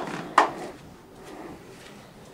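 Bare heels striking a carpeted floor during heel-walking: two sharp knocks about half a second apart near the start, then much fainter steps.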